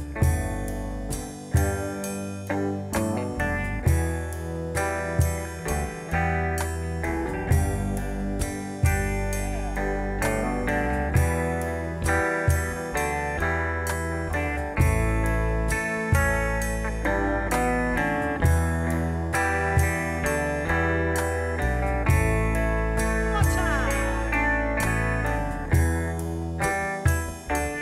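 Electric guitar played without singing: picked notes and chords over deep bass notes that change every second or two, with a few bent notes near the end.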